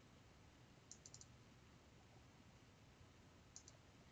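Near silence with faint computer mouse clicks: a quick run of four clicks about a second in and two more near the end.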